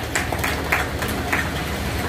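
Steady low background rumble, with a few faint short hisses.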